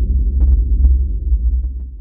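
A loud, low throbbing drone with a few faint crackles over it, fading out near the end.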